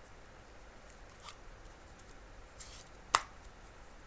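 Playing cards being handled in the hands: a few faint ticks of the cards, then one sharp card click about three seconds in.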